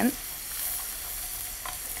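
Scallions and garlic frying in melted butter in a pan, stirred with a spoon: a steady sizzle.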